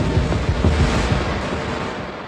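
A rushing, wind-like noise with a low rumble underneath, slowly fading away.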